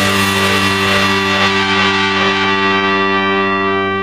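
Final distorted electric guitar chord of a punk rock song, struck once and held, ringing out steadily with no drums under it.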